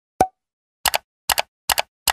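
Animated end-screen sound effects: one short pop, then three quick double clicks in a row, evenly spaced, as the Like, Share and Subscribe buttons and banners appear.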